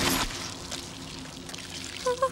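Liquid pouring, loudest in a burst at the very start and then running on more quietly and evenly.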